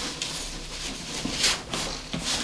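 Fabric rustling as a pink cloth dress is pulled down off a large plastic doll, with a brief louder swish about one and a half seconds in.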